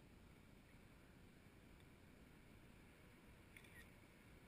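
Near silence: a faint low background rumble, with one brief faint click near the end.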